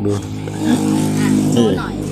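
Speech over a steady low engine hum.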